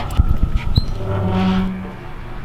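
A key turning in a brass deadbolt lock, with a few sharp metallic clicks of the key and key ring in the first second. A short low hum with a hiss follows about a second and a half in.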